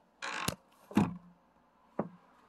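Handling noise from a phone being moved: a short rustle ending in a sharp click about half a second in, another brief rustle around a second, and a click near the end.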